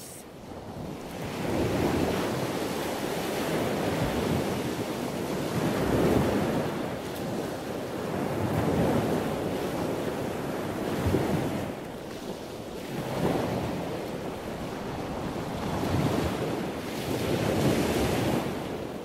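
Ocean surf: a rushing wash of waves that swells and ebbs in slow surges every three to four seconds.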